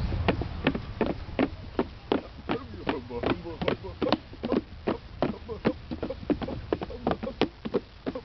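Footsteps on a wooden plank walkway: a toddler and an adult walking along the board, a steady run of sharp knocks about two to three a second.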